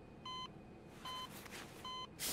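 Hospital patient monitor beeping steadily: three short, high beeps, one about every 0.8 seconds, at a pulse-like pace.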